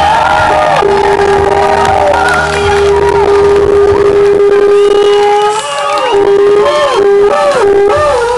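Live Nepali dance music played through loudspeakers, with crowd noise behind. One note is held for about five seconds, then comes a run of short notes that bend in pitch.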